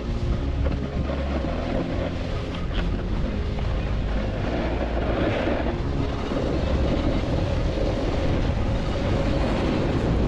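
Wind rushing over a GoPro action camera's microphone while skiing downhill, mixed with the hiss of skis sliding on snow. The sound is a loud, steady rush with no pauses.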